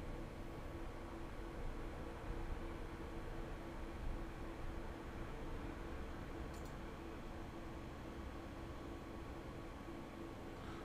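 Quiet room tone: a steady low electrical or fan hum with faint hiss, and a single faint mouse click about two-thirds of the way through.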